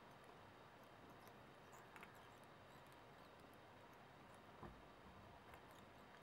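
Near silence: room tone, with a few faint ticks about two seconds in and near the end.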